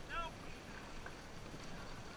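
Dragon boat crew racing: one short shouted call about a quarter second in, with fainter voices after it, over a steady rush of wind on the microphone and water.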